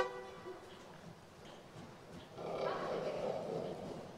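Arabian horse calling: the loud end of a high, pitched call right at the start, then a rougher, noisier call about two and a half seconds in that lasts about a second, its pitch falling.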